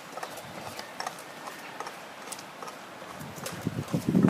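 Irregular clicks and crunches of footsteps and trekking-pole tips on a wet, stony track, a few per second, over a steady hiss. A low rumble builds near the end.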